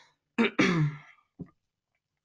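A woman clearing her throat once, about half a second in, with a short, fainter second sound about a second later.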